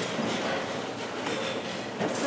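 Steady rustling and shuffling of an audience moving about and settling in a large hall.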